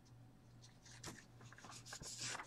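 Near silence with faint, light scratching of paper being handled, over a low steady hum.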